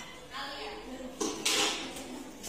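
Countertop electric oven's glass door being swung shut, with a sharp metal clatter a little after a second in, then a brief scraping rush near the end.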